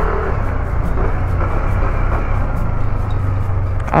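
Motorcycle ridden at low speed: steady engine noise mixed with a low wind rumble on the helmet-mounted microphone.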